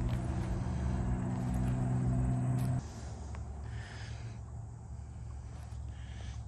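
A passing car's stereo blasting music, heard as a steady low drone of held bass notes that cuts off abruptly about three seconds in.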